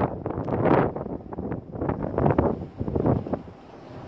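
Wind gusting over the phone's microphone in uneven surges, easing off near the end.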